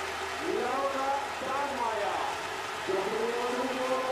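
Indistinct speech over a steady haze of stadium crowd noise.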